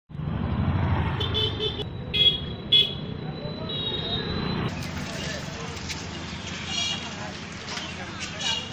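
Street traffic with several short vehicle horn toots, the two loudest close together about two seconds in, and a low engine rumble at the start. Indistinct voices sit in the background.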